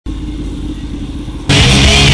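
A Honda NM4's parallel-twin engine running as the motorcycle rides along, with a low rumble. About one and a half seconds in, loud rock music with guitar cuts in suddenly and covers it.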